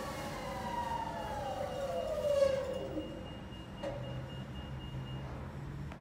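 Commercial front-load washing machine winding down from a spin: the motor and drum whine falls steadily in pitch as the drum slows. About four seconds in there is a click, and a low hum follows as the drum turns slowly.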